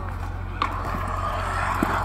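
Stunt scooter's wheels rolling on a concrete skatepark bowl, a rushing, gritty roll that grows louder as the rider comes closer and carves the wall. A sharp click about half a second in and another near the end.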